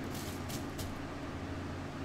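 Plastic cling wrap crinkling faintly a few times as gloved hands press it down onto wet epoxy resin, over a steady low background hum.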